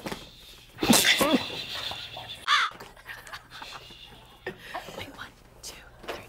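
Stifled, strained vocal sounds of a man getting a hard wedgie while trying to stay quiet: short pained groans and panting breaths, with a brief high-pitched cry about two and a half seconds in.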